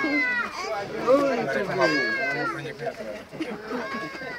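Lively, overlapping chatter of zoo visitors, children among them, with high-pitched excited squeals near the start and around the middle.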